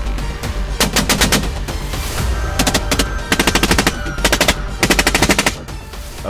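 Rapid rifle fire from a helicopter, in several quick bursts of shots, the longest about a second in, with background music underneath.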